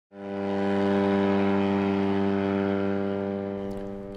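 Engine of an RQ-23A TigerShark unmanned aircraft running at a steady, unchanging pitch during its takeoff run. It fades in right at the start and eases a little in level toward the end.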